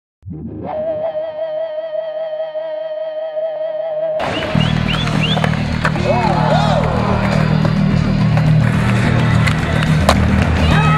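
Soundtrack rock music: a single sustained, wavering electric guitar note run through effects for about four seconds, then a heavy, bass-driven rock song crashes in with voices shouting over it.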